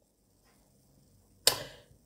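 A pause of near silence, then about one and a half seconds in a single short, sharp noise that fades away within half a second.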